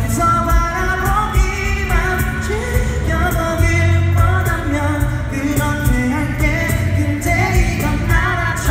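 A live band playing a pop song in an acoustic arrangement: a male lead singer over acoustic guitar, bass guitar and a cajón keeping the beat.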